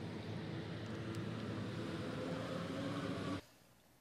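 Steady low rumble of distant road traffic, with a faint hum, that cuts off suddenly about three and a half seconds in, leaving near silence.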